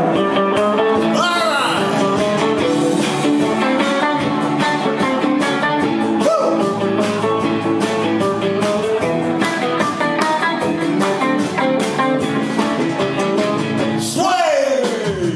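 Live band playing a song with a steady beat: electric guitars, bass guitar and keyboards, with a man singing lead through the PA.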